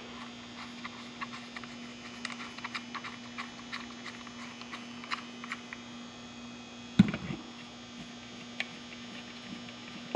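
Light clicks and taps of a UFO-style LED high bay light and its cord being handled and hung on a ceiling hook, with one sharper knock about seven seconds in, over a steady hum.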